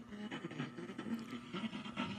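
A cassette-and-CD karaoke machine playing sound through its small speaker, set to CD mode rather than tape: a continuous, wavering sound.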